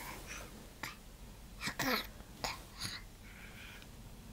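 A baby making short, breathy vocal noises: four or five brief huffs and squeaks, one of them sliding down in pitch.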